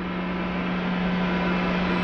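A drone sound effect: a steady hum with a hiss above it, slowly growing louder.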